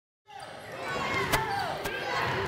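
Ambience of a gym fading in after a brief silence: many children shouting and cheering in a large hall, with two sharp smacks half a second apart near the end.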